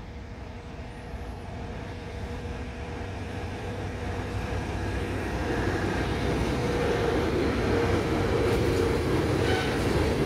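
Diesel locomotive BR235 hauling a train of tank wagons, approaching and growing steadily louder throughout, with a steady hum from the engine.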